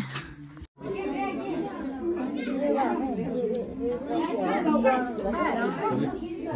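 Chatter of several people talking over one another, no single voice clear. A brief gap in the sound just under a second in.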